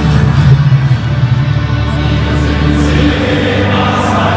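Football stadium crowd singing in unison with music, as the teams walk out; long held notes under a steady wash of many voices.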